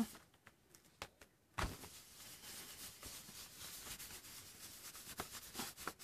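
Faint, steady rubbing on paper as acrylic paint is worked by hand over a collaged sheet, starting about a second and a half in, with a few light taps.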